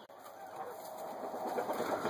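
Chickens clucking faintly over low background noise, after a short sharp click at the very start.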